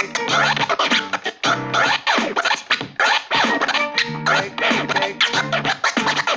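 Scratching on an SC1000 portable digital scratch instrument: a recorded sample dragged back and forth under the hand-moved platter, its pitch sweeping up and down, chopped into short pieces by quick fader cuts.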